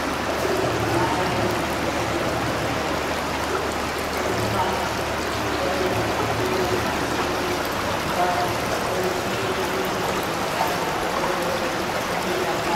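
Steady rush of running water in an indoor swimming pool, with a man's voice murmuring faintly underneath it.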